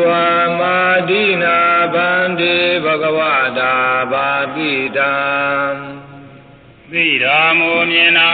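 A single voice chanting in long, held notes with slow rises and falls in pitch, in the manner of Burmese Buddhist recitation. It breaks off about six seconds in and resumes about a second later.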